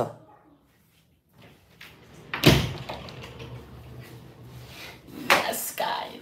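A single loud thud about two and a half seconds in, followed by a low hum for a couple of seconds; a short vocal sound near the end.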